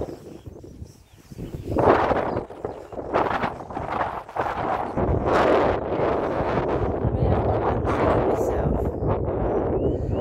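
Wind buffeting a phone microphone during a walk through long grass, a low rumble that turns steady about halfway through, with rustling and handling noise on top.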